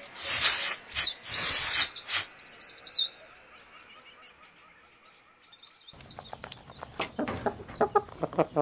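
Birds chirping: rapid high chirps, some falling in pitch, for the first few seconds, then a brief lull before the chirping picks up again near the end.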